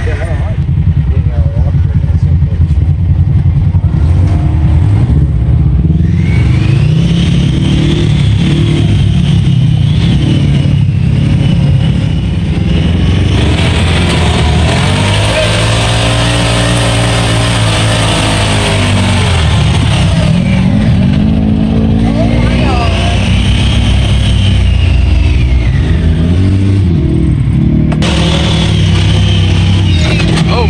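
Side-by-side UTV engine running hard off-road, its pitch climbing and easing as the throttle is worked, with a high whine rising and falling alongside it. The revs build to a peak in the middle and drop back about twenty seconds in.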